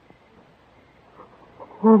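A pause with only the faint hiss of an old recording, then a woman crying out a grief-stricken "Oh" near the end, after a faint sob.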